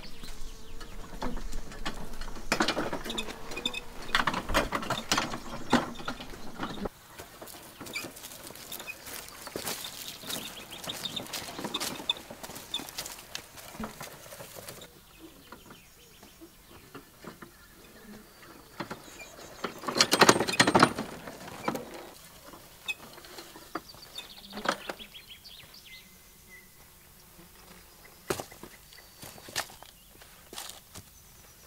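Rustling and scratching in dry leaf litter, then footsteps crunching on dry dirt and gravel and a wooden wheelbarrow being pushed over a dry creek bed. The loudest sound, a crunching rattle about a second long, comes about two-thirds of the way through.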